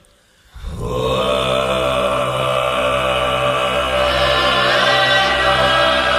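After a brief silence, deep chanted music comes in about half a second in: a sustained drone of steady, overtone-rich voices in the manner of a mantra chant. Its upper tones grow brighter about four seconds in.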